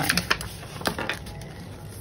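Paper handling on a tabletop: a sheet being slid and lifted off another, with a cluster of short light clicks and taps in the first second and one more about halfway, then a soft rustle.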